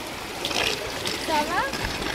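Water splashing in a shallow pool full of children, with children's voices calling over it, one high call about one and a half seconds in.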